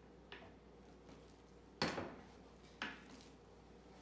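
Two knocks about a second apart, the first the louder, over quiet room tone, as focaccia dough and kitchen tools are handled on a stainless steel worktable.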